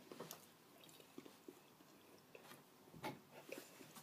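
Near silence with faint, scattered mouth clicks of someone chewing a hard, very chewy Tootsie Roll; one slightly louder click comes about three seconds in.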